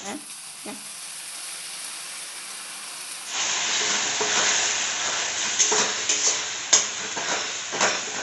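Tomato puree and onions frying in hot oil in a metal kadai: a quieter steady sizzle at first, then from about three seconds in a louder sizzle as a steel ladle stirs the masala, scraping the pan with several sharp clinks.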